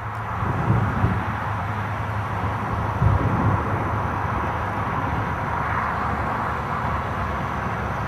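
Steady outdoor rumble and rush of noise under a storm, with a louder low swell about three seconds in.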